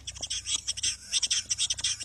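Male western capercaillie singing its display song, in the whetting phase: a rapid, hissing, grating scrape that follows its run of clicks.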